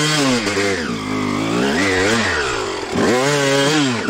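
Suzuki RM250 two-stroke single-cylinder dirt bike engine being ridden, its revs rising and falling with the throttle: they fall away about half a second in, climb and dip again, and rise sharply about three seconds in.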